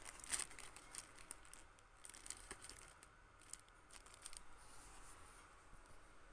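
Faint crinkling and rustling of a paper sandwich wrapper as the banh mi is handled, in scattered bursts of small crackles, the sharpest about a third of a second in.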